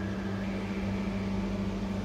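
A steady, even mechanical hum from a running motor or appliance, unchanging throughout.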